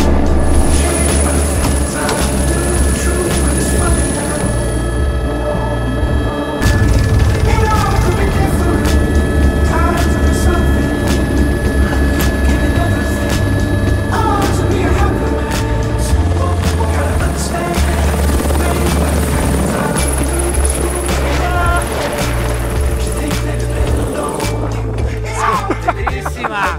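Helicopter rotor and engine noise mixed with background music that has a strong bass line and a steady beat.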